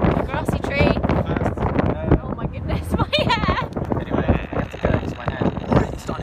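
Wind buffeting the phone microphone in an open-top convertible at road speed, a loud rough rumble throughout, with snatches of voice at about one and three seconds in.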